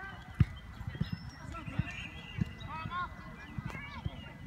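Distant voices of players and spectators calling out across an open soccer field. Irregular low thumps and rumble run under them, the sharpest about half a second in.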